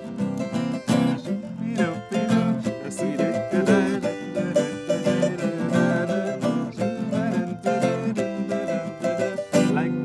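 Acoustic guitar and a braguinha, a small Portuguese four-string instrument, played together in a calypso tune: steady strummed chords with a bright plucked melody over them.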